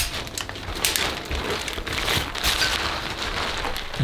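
Rods of an Aputure Light Dome 2 softbox being pulled out of their clips on the speed ring one after another, with several sharp clicks over continuous rustling of the softbox fabric as it collapses.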